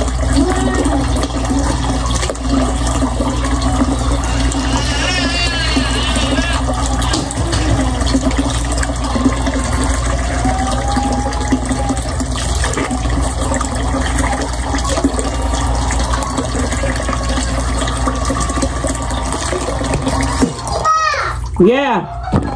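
Bathroom sink faucet running in a steady stream into the basin during tooth brushing, then shut off near the end.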